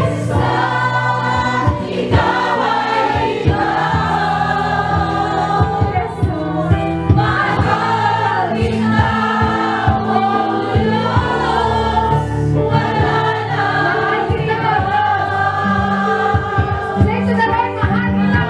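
Gospel worship song: a choir singing over instrumental backing with bass and drums.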